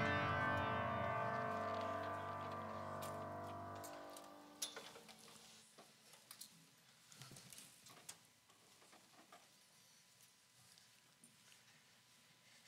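Worship band's last held chord ringing out and fading away over about four seconds, followed by quiet room sound with scattered light clicks and knocks.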